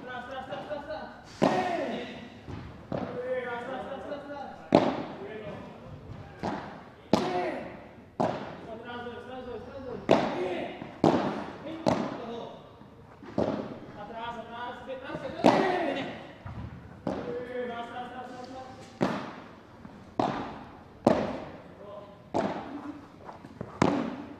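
A long padel rally: the ball is struck back and forth with padel rackets and bounces off the court and the glass walls, giving about twenty sharp knocks, one every second or so. Short voices rise after many of the shots.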